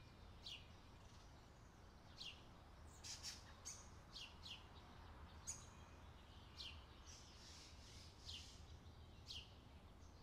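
Faint bird chirps: short, high, falling calls about once a second over a low steady hum.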